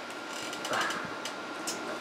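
Stiff paper trivia question cards being thumbed through and pulled from their box: a quick run of light clicks and flicks of card edges.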